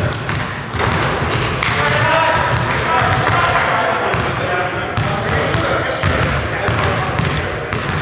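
Indistinct voices talking in an echoing gymnasium, with a basketball bouncing on the hardwood court.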